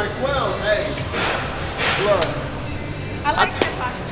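People talking and vocalising amid gym noise, with one sharp knock about three and a half seconds in.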